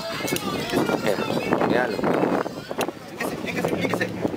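Indistinct voices of people talking, with no words clear enough to make out.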